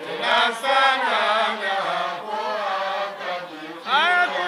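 A group of men's voices chanting a qaswida, an Islamic devotional song, in a melodic line that rises and falls, with a brief pause between phrases just before the end.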